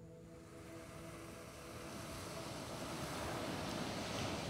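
Ocean surf washing onto a sandy beach, its rushing noise growing steadily louder, while soft background music fades out in the first second.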